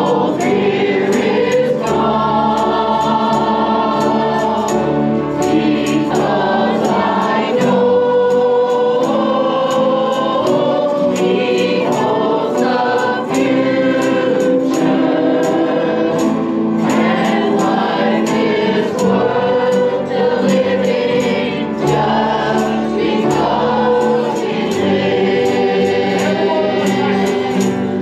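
A group of women singing a gospel song together through microphones, over a steady beat of light, high ticks.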